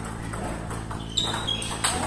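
Table tennis rally: the ball clicking sharply off rackets and the table, the two loudest hits well into the second half, over a steady low hum.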